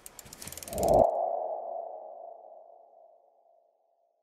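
Logo-reveal sound effect: a fast run of ticks builds into a hit about a second in, leaving one ringing tone that fades out over the next two seconds.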